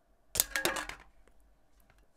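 Tempered glass screen protector being pried off a phone screen: a quick crackle of sharp clicks as the adhesive lets go, then a few faint ticks. It takes a little force to come off.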